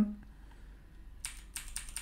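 Computer keyboard keystrokes: the Escape key tapped about four times in quick succession, starting just over a second in.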